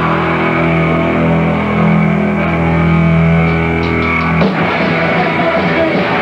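Hardcore punk band playing live, heard on a raw bootleg tape: a long held, distorted chord rings steadily for about four and a half seconds, then cuts off and the band comes back in with drums and guitar.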